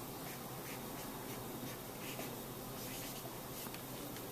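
Felt-tip marker scratching on paper in a series of short, irregular strokes as small capital letters are written.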